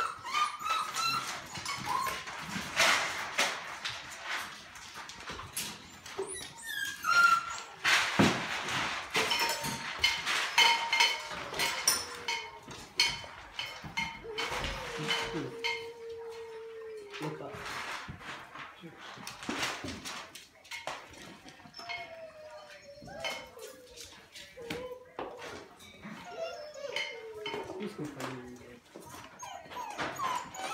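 Golden retriever puppies whimpering and whining, with several long drawn-out whines in the second half, over scattered clicks and knocks from the puppies moving about the pen.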